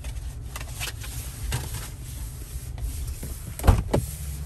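Rubbing and rustling of a handheld phone being moved around inside a car's cabin, over a steady low rumble, with scattered clicks and a loud knock near the end.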